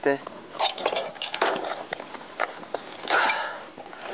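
Clinks and scrapes of rusted metal aircraft wreckage being picked up and moved on stony ground, with a cluster of sharp clicks between about half a second and a second and a half in.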